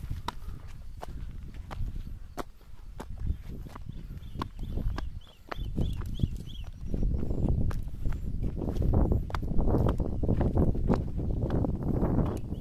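Footsteps on bare rock, sharp clicks about twice a second, with wind rumbling on the microphone that grows louder after about seven seconds. A short run of high chirps comes about four seconds in.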